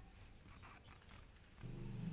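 Near silence: faint room tone during a pause in reading, with a low steady hum starting near the end.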